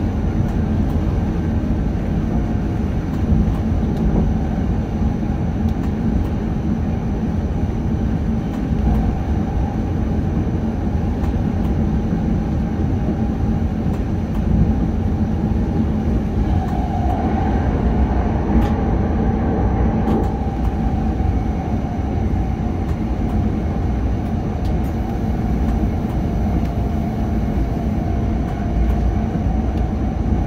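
Škoda RegioPanter electric multiple unit running at speed, heard from the cab: a steady rumble of wheels on the rails under a faint steady traction whine. The sound swells for a few seconds past the middle as the train passes under a bridge.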